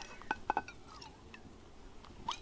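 A few faint light clicks and taps in the first second, from an aluminium camping mug being handled.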